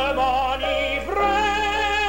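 Operatic tenor singing an aria with wide vibrato, ending one phrase and then holding a long new note from about a second in.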